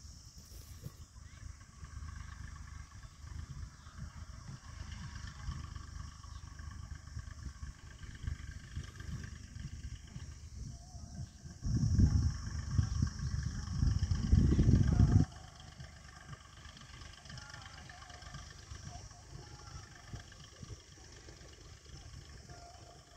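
Distant farm tractor's engine running slowly, a steady low rumble, while its trolley of cow-dung manure is unloaded in the field. Just past the middle, a much louder low rumble lasts about three and a half seconds and cuts off suddenly.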